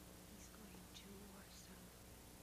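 Near silence with faint, low speech close to a whisper.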